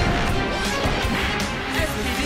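Superhero transformation sequence soundtrack: driving action music over a run of sharp impact and crash sound effects.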